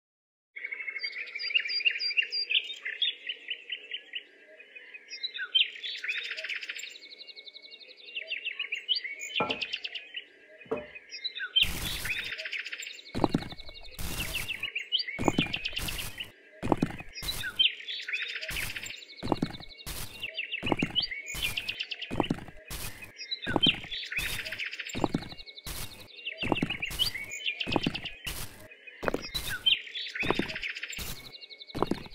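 Birds chirping in clusters that recur about every two seconds. From about ten seconds in, sharp clicks join at a loose, fairly regular beat.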